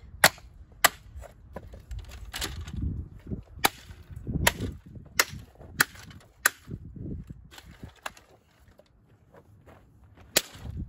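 A plastic steam mop being smashed: about eight sharp cracks of hard plastic being struck, spread unevenly over several seconds, with duller thuds and rattling between them, then a lull near the end.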